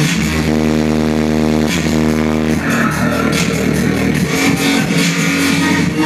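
Loud dubstep played over a club sound system: a heavy synth bass holds long notes of a second or more, broken by short gaps.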